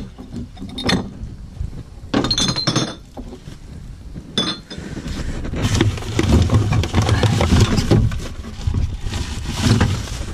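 Bottles and cans clinking and knocking together as recyclables are handled and dropped into a plastic wheelie bin, with plastic bags rustling. There are separate clinks in the first half, and busier, continuous rummaging in the second half.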